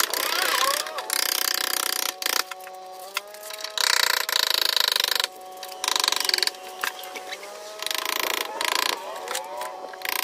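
A handheld power tool run in repeated bursts of about a second, stripping old rubber and urethane from a car's window frame.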